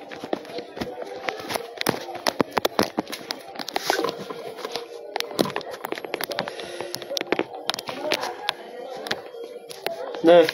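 Faint, indistinct voices with many irregular clicks and taps scattered throughout.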